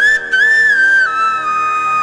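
A flute plays a slow devotional melody over a steady drone. It makes a short ornamented turn, then falls to a lower held note about a second in.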